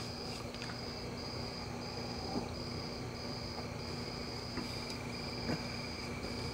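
Insect chirping in a steady high pulse, repeating about every two-thirds of a second, over a low steady hum, with a few faint small clicks.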